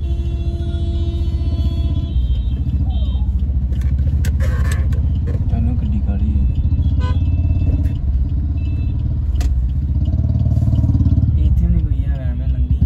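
Steady low rumble of a car's engine and tyres, heard from inside the cabin while driving. A steady held tone runs for about the first two seconds.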